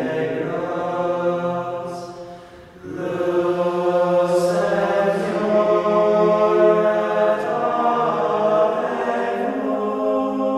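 Unaccompanied choir chanting slow, sustained sung notes, with a brief break between phrases about two and a half seconds in.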